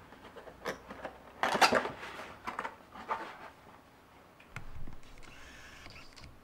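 Packaging being handled: a cardboard box and a cord pack scraped and knocked as the pack is pulled out. Irregular clicks and short rustling scrapes, the loudest about a second and a half in.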